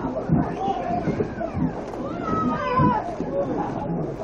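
Children squealing and laughing with excitement, high gliding shrieks over the splashing and sloshing of pool water as a canoe full of people is pushed through it, with a few dull low thumps of water.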